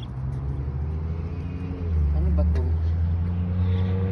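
Motor vehicle engine running on the adjacent road, a steady low hum that gets louder about two seconds in.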